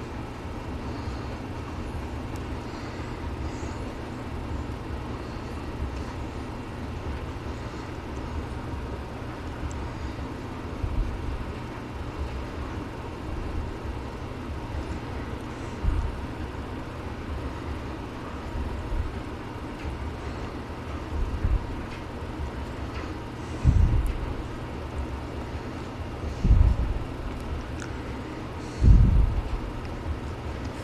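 Steady low background hum with a few dull, low knocks in the second half, louder toward the end, while glue is brushed onto a paperback's spine in a bench press.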